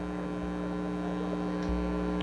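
Steady electrical mains hum with several stacked tones, holding level, with a low rumble swelling near the end.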